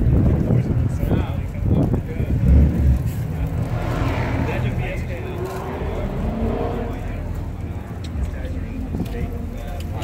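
Car-meet ambience: background voices over a steady low rumble, with a brief low bump about two and a half seconds in.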